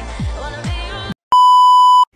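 Pop music with a sung melody and deep, falling bass-drum hits, which cuts off about a second in. After a brief gap a loud, steady, high electronic beep sounds for most of a second, like a TV test tone.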